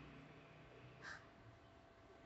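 Near silence: faint room tone, broken by one short, faint call-like sound about a second in.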